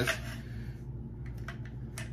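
A few faint, light metallic clicks of a SCAR 17S bolt carrier being worked into the upper receiver past a snag, over a low steady hum.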